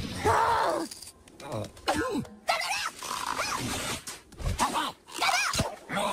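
Animated cartoon characters' wordless vocal sounds: a run of short grunts, groans and cries, with pitch bending up and down, broken by brief sound effects.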